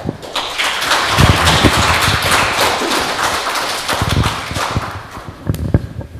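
Audience applauding: dense clapping that swells within the first second and fades out near the end.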